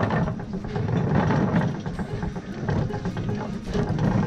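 Small engine of a motorized carrier running as it travels over rough ground, with rattles from the frame, under background guitar music.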